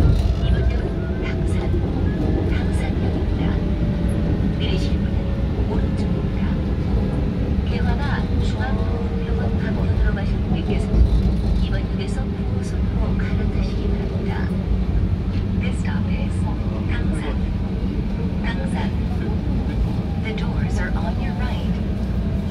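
Seoul Line 2 subway train running, heard from inside the car: a steady low rumble of wheels and running gear with frequent light clicks and ticks, and a faint whine that slowly falls in pitch.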